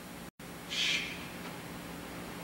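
A pause in a man's sermon: a short hiss of breath about a second in, over the steady hiss and low hum of an old tape recording, with a momentary dropout near the start.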